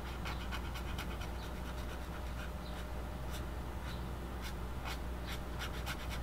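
Ink pen nib scratching on paper in a quick series of short shading strokes, faint.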